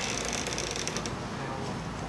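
Low, steady room noise with a faint hum and a few faint clicks, in a pause between speech.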